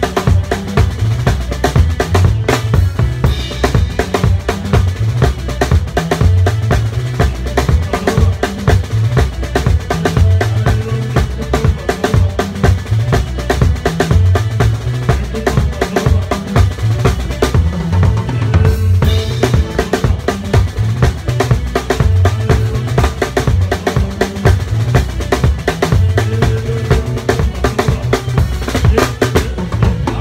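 Live music from a drum kit played close by, with a steady kick-drum and snare beat, cymbals, and held pitched notes from other instruments underneath.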